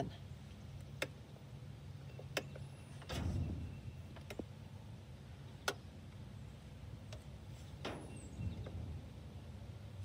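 Faint handling noise as multimeter test leads are worked against wiring terminals: a few sharp clicks and a couple of brief rustles, over a low steady hum.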